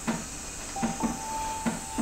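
Soft background music under a dialogue scene: a light ticking beat, roughly one tick a second, with a held high note coming in about a second in, over a steady hiss.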